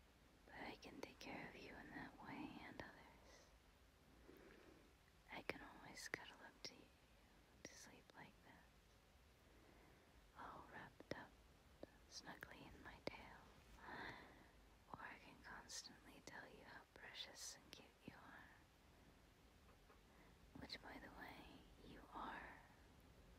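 A woman whispering softly close to the microphone, in short phrases with pauses between them.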